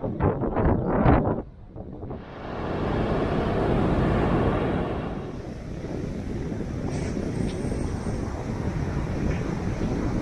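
Wind buffeting an action camera's microphone, with surf breaking on the beach: a few gusty bursts in the first second and a half, then a steady loud rush from about two seconds in.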